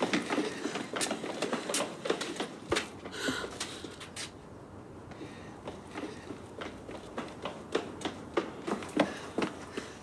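Footsteps on concrete paving: a quick, irregular run of steps, thinning out after about four seconds, with a few sharper steps near the end.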